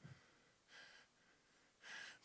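Near silence with two faint breaths taken into a handheld microphone, one about three-quarters of a second in and another near the end.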